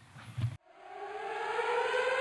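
A siren-like rising tone, several pitches sounding together, fades in about half a second in. It climbs slowly in pitch and grows louder as the intro swell of an edited-in backing track.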